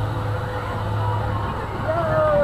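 Helicopter carousel ride turning, with a steady low hum throughout.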